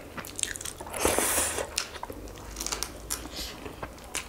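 Close-miked eating: crunching bites into fried chicken wings and chewing, with many small crackles and a louder crunch about a second in.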